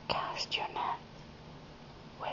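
A person whispering, a short phrase of a few syllables in the first second, then a pause.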